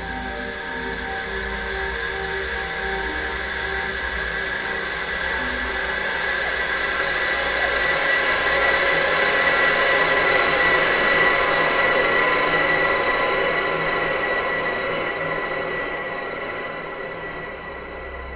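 Eerie horror-film score: a dense, droning wash of noise with sustained high tones that swells to its loudest about halfway through, then slowly fades.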